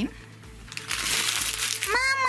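Paper burger wrapper crinkling for about a second as it is handled, starting a little way in. A high call that rises and falls begins right at the end.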